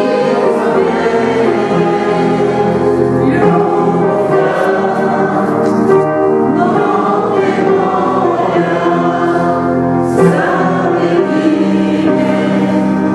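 Choir singing sacred music, many voices holding sustained chords that shift every second or two.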